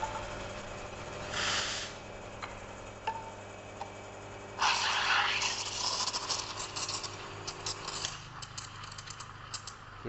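Espresso machine steam wand frothing milk in a steel pitcher for a cappuccino. About four and a half seconds in the steam opens with a loud hiss and a run of rapid crackling as lots of air is drawn into the milk to build a thick foam. A short hiss comes earlier, about a second and a half in, and a low hum runs underneath until about eight seconds in.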